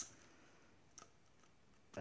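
Near silence, with a faint click about halfway through and another near the end as a small metal tea tin is handled.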